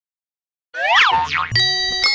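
iQIYI streaming-service logo jingle: after a brief silence, a springy rising 'boing' sound effect and a swooping glide down and back up, then bright bell-like chime notes that ring on.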